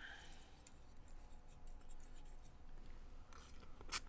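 Fork and spoon clinking and scraping lightly as linguine is twirled in a bowl, with one sharp, loud click near the end.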